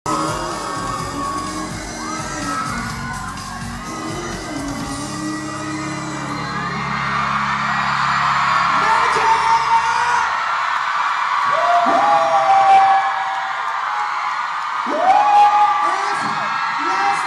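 Live pop song with amplified singing in a hall; the backing music drops out about ten seconds in. High screams and cheers from the audience rise after it stops.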